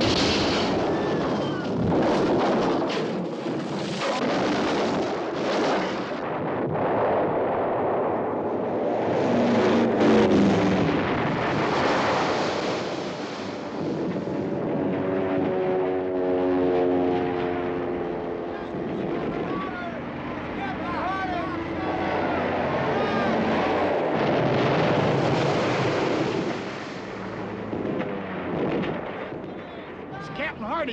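Film battle soundtrack of an air raid: aircraft engines, explosions and gunfire, loud and continuous throughout.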